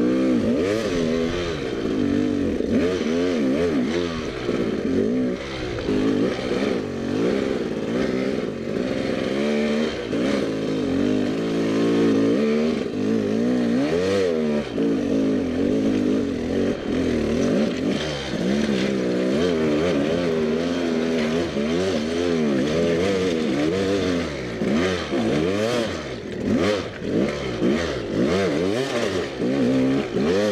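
Dirt bike engine running under constant throttle changes, its pitch rising and falling every second or so as it is ridden slowly over technical, rocky ground.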